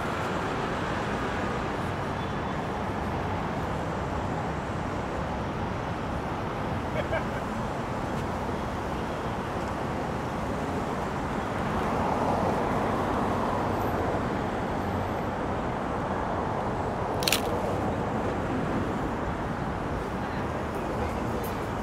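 City street traffic noise at an intersection: a steady background of road noise, a car passing and swelling about twelve seconds in, and a single sharp click a few seconds before the end.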